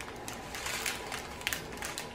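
Soft, scattered crinkling of small plastic bags of diamond-painting drills being handled, with a few faint ticks as the bags shift in the hands.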